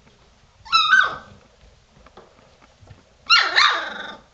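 Golden retriever puppies, about three weeks old, giving two high-pitched yelps: a short one just under a second in and a longer one that falls in pitch a little over three seconds in.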